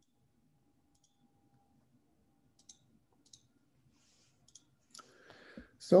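Near silence broken by a few faint, scattered clicks, typical of a computer mouse as a presentation slide is advanced, with a soft rustle near the end.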